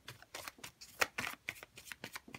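A deck of fortune-telling cards being shuffled by hand, overhand: a quick run of card snaps and rustles, the sharpest about a second in.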